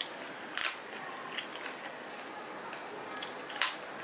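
Close-up eating sounds of chicken biryani being chewed, eaten by hand: small wet mouth clicks, with two louder, short crisp smacks about half a second in and again near the end.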